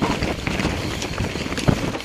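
Mountain bike descending a rough dirt trail at speed: tyres rolling over dirt, the bike rattling and knocking over bumps, with wind on the microphone. One sharper knock near the end.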